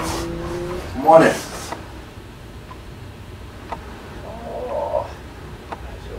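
A person's muffled cry, loud and rising then falling, about a second in, with fainter vocal sounds near the end. A steady low hum stops just before the cry.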